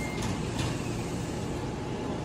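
Steady low hum and rumble of a standing Amtrak passenger train at a platform, with a few faint clicks.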